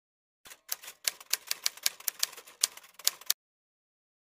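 Typewriter typing sound effect: a quick, uneven run of sharp keystroke clicks, about six a second, that starts about half a second in and stops abruptly before the end.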